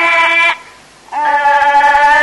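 Thai classical music in an old recording: a long held note ends about half a second in, and after a short pause a new long held note begins, with the bleating, nasal quality of Thai classical singing or reed playing.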